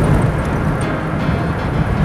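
Steady low road and engine noise heard inside a moving car's cabin.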